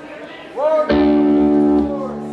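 An electric guitar chord struck through an amplifier and left ringing, starting suddenly about a second in and sustaining, loud at first and then quieter. Just before it comes a short rising glide in pitch.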